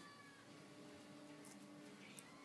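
A faint, drawn-out cat meow, held nearly level in pitch for about a second and a half.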